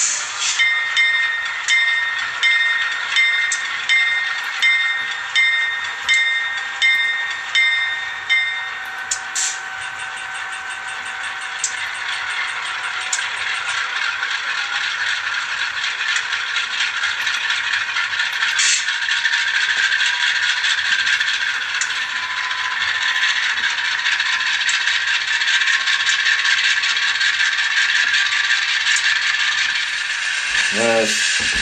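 Sound-decoder recording of a GE Dash 8 diesel locomotive played through the small speaker of an N scale model: a bell rings steadily, about one and a half strokes a second, for the first nine seconds or so, then the prime-mover sound runs on alone and grows slowly louder, with a few clicks. It sounds tinny and rattly, as a tiny speaker does.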